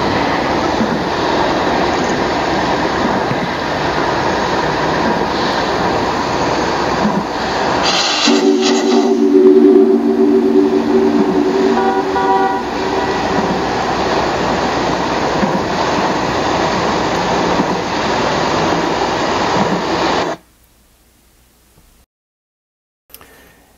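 Steam whistle of the steamship RMS Segwun blowing one long chord of several tones for about three seconds, starting with a short hiss about eight seconds in and trailing away in its echo. Steady rushing noise runs under it, before and after.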